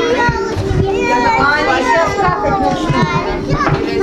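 A crowd of young children talking and calling out all at once, their voices overlapping.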